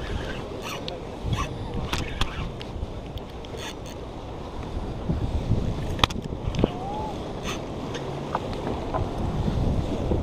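Wind buffeting the microphone, with scattered sharp clicks and knocks as a spinning reel is cranked and handled.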